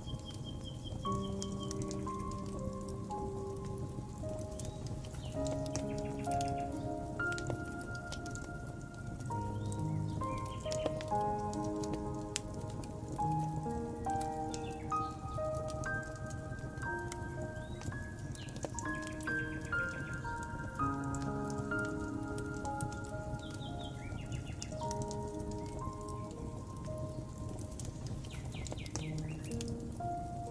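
Slow, soft piano melody over a steadily crackling wood fire, with a few brief bird chirps now and then.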